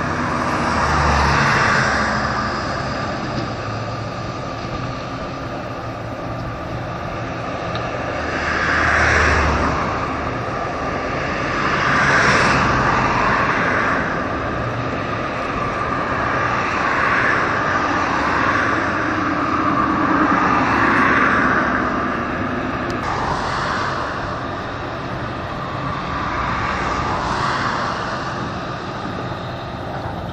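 Steady outdoor rushing noise that swells and fades about six times, a few seconds apart, over a faint steady hum.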